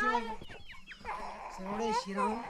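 Chickens clucking among people's voices, with a few short high calls about half a second in.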